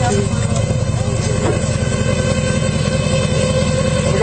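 Patrol boat's engine idling with a steady low rumble and hum.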